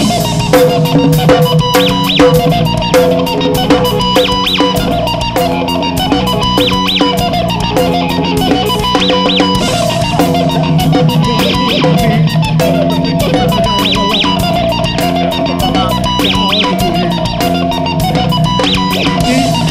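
Live rock band playing instrumentally: electric guitar over a drum kit with bass drum, the guitar figure repeating about every two and a half seconds.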